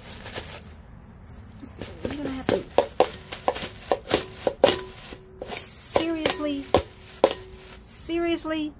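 A metal scraper tapping and knocking repeatedly on a plastic bowl: a quick, irregular series of sharp clicks, some with a short ring.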